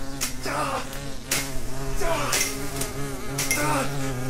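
A swarm of hornets buzzing in a steady drone, with several insects flying close past, each one falling in pitch as it goes by.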